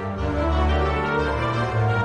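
Instrumental Christmas music playing, with layered sustained notes over changing low bass notes.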